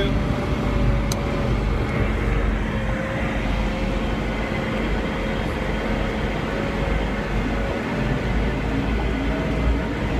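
Case 580 backhoe loader's engine running steadily as the machine drives along a road, heard from inside the cab: a constant low rumble with a steady whine above it.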